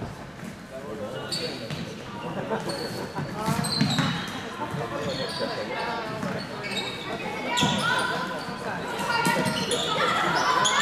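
Floorball play in a large sports hall: scattered sharp clicks of sticks striking the plastic ball, mixed with players' shouts and calls.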